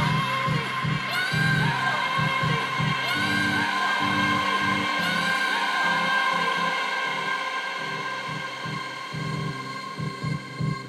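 Electronic dance music played live from a DJ controller, in a breakdown with no kick drum: long held tones with swooping, gliding pitches over a broken bass pulse. The bass thins out briefly past the middle.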